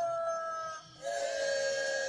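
A voice singing two long, high held notes, each sliding up into the note and falling away at the end, with a short break between them about a second in.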